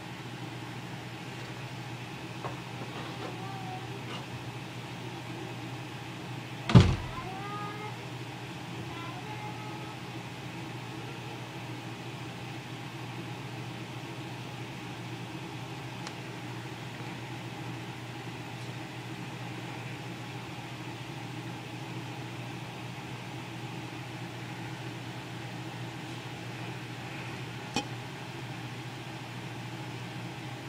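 Steady low background hum, with one sharp knock about seven seconds in and a faint click near the end.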